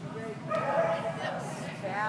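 A dog barking and yipping in a burst about half a second in, with more near the end, over background voices.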